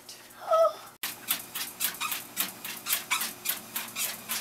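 A dog panting quickly and rhythmically, about five breaths a second, as it walks on a running treadmill, starting about a second in after a cut.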